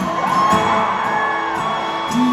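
Live acoustic guitar song with held notes, and audience whoops gliding up over the music.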